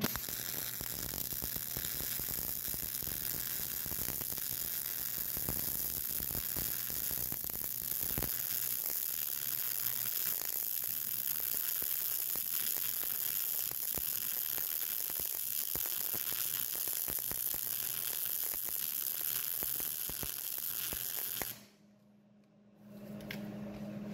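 MIG (GMAW) welding arc on mild steel, fed with 0.035-inch ER70S-6 wire: a steady crackling sizzle with fine rapid pops as one continuous bead is run. It stops abruptly near the end when the arc is broken.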